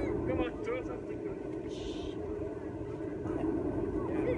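High children's voices calling out with sliding pitch, over a steady low hum, with a short hissing burst about two seconds in.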